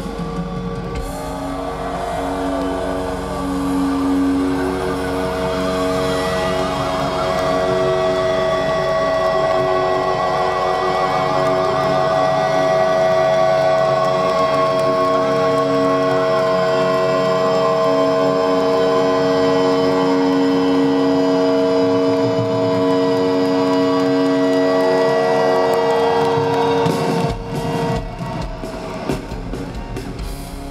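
Live heavy-metal band holding a long sustained chord, the electric guitars ringing on in steady held notes. The chord breaks up into irregular drum hits a few seconds before the end.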